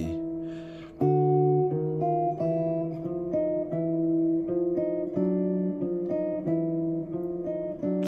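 Hollow-body electric guitar playing a chromatic contrary-motion line in two voices: a series of two-note intervals, about one pair every two-thirds of a second, beginning about a second in.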